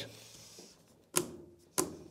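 Two sharp clicks about two-thirds of a second apart from the chain tensioner of a Hyundai HYC40LI cordless chainsaw being turned clockwise to re-tension a slack chain.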